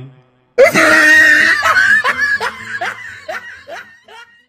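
A person laughing: a loud, high-pitched burst of laughter about half a second in, breaking into a string of short laughs that grow fainter and slower toward the end.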